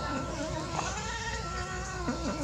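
Cats crying with drawn-out cries that waver up and down in pitch while they are held apart.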